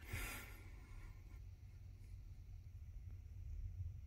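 A soft exhale, like a sigh, in the first half second, then near quiet with only a faint low rumble.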